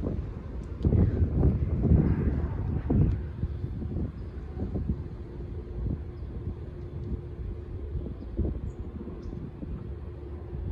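Wind noise on a handheld phone's microphone outdoors, gusting hardest in the first few seconds, with a steady low hum underneath from about four seconds in.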